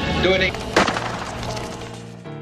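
Film soundtrack: a brief shout, then a sudden loud crack just under a second in, over background music that fades away.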